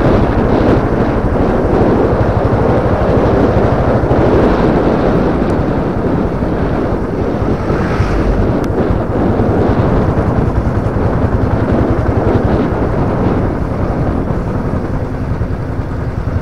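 Motorcycle engine running steadily while riding, with wind buffeting the microphone.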